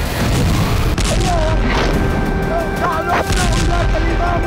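Dramatic war sound effects: a dense, continuous low rumble of booms and blasts. A wavering higher tone comes in about a second in, and there is a sharper crack just after three seconds.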